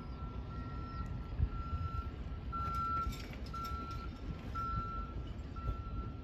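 Reversing alarm beeping steadily, a single tone about once a second, over a low outdoor rumble.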